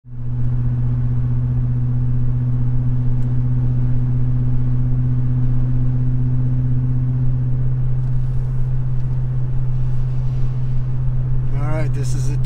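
Pickup truck's exhaust heard inside the cab at a steady highway cruise: a loud, constant low hum over road noise, with no change in pitch. The exhaust runs nearly straight through a Roush muffler that gives little muffling, so the hum builds up pressure in the cabin.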